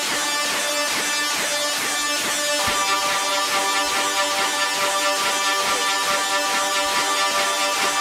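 Live band playing a song's intro: sustained chords under a repeating falling figure, with a fuller layer of chords coming in about three seconds in.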